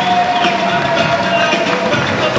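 Music over a public-address system, with one long held note, over a noisy crowd background.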